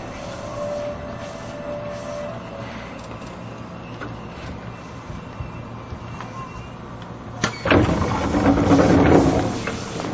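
Running sound inside a Seibu New 2000 series chopper-controlled electric train drawing to a stop at a station, a steady low rumble with a faint whine at first. About seven and a half seconds in, a sharp clunk and a loud rush of noise as the passenger doors slide open.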